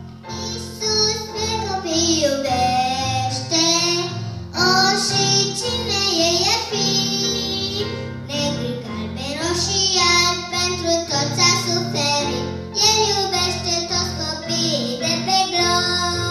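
A young girl singing a Romanian children's hymn into a handheld microphone, with a steady keyboard accompaniment of sustained chords under her voice.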